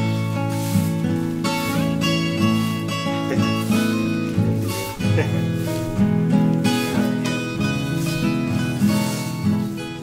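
Background acoustic guitar music, a steady run of plucked and strummed chords.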